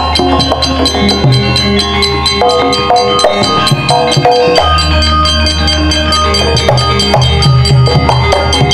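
Javanese gamelan ensemble playing a wayang accompaniment: a fast, even beat of struck strokes over ringing pitched metal notes.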